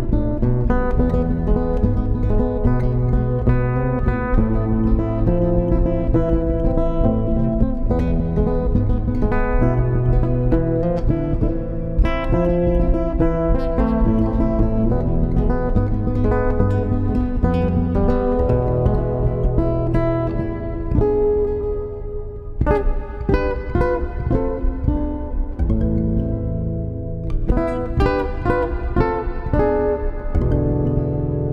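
Guitar instrumental music: plucked and strummed guitar playing a continuous melody over sustained low notes, the playing thinning out briefly about two-thirds of the way through before picking up again.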